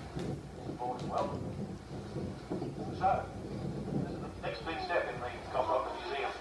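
Faint, indistinct speech in short snatches over a low steady hum.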